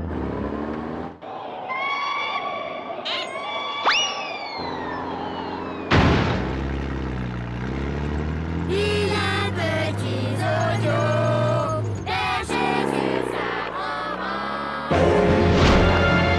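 Cartoon background music with comic sound effects: a quick rising whistle-like glide about four seconds in and a sudden loud hit about two seconds later.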